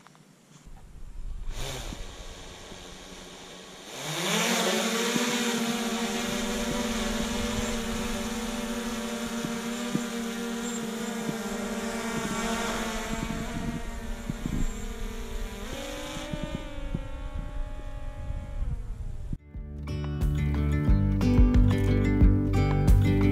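DJI Air 2S quadcopter's propellers spinning up about four seconds in and running with a steady high whirring hum as it lifts off and hovers; the hum drops lower in pitch about sixteen seconds in. Near the end it cuts off and background music begins.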